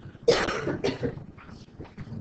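A person coughing twice in quick succession, the second cough shorter than the first.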